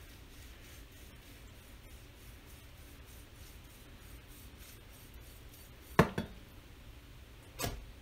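Quiet slicing of a knife through venison and connective tissue on a wooden cutting board. About six seconds in comes a sharp knock on the board with a quick second one, and there is a smaller knock near the end.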